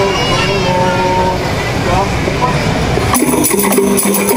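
Outdoor crowd and traffic rumble with a voice holding long notes, then about three seconds in a qasidah ensemble's hand drums and jingling percussion strike up suddenly to start a song.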